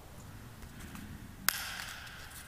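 A single sharp click about one and a half seconds in, with a short ring after it, over the quiet room tone of a large, reverberant church.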